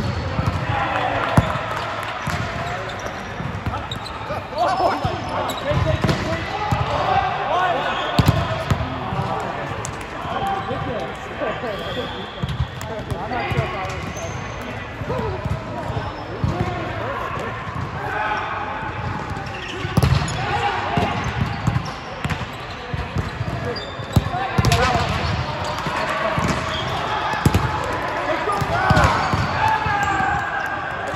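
Indoor volleyball play: sharp smacks and thuds of the ball being hit and dropping on the court at irregular moments, with several players' voices calling and chatting.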